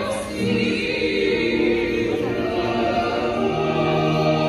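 Choir singing slow, held chords in several parts, with a deep bass note joining about three and a half seconds in.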